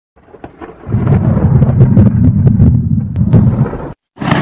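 Thunder: a few faint crackles, then a loud rolling rumble with crackling from about a second in, cut off suddenly just before the end.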